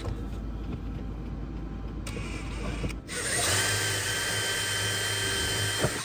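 DeWalt cordless drill boring a hole through the van's wooden electrical panel board. It runs loud and steady with a whine from about halfway through, then stops abruptly at the end.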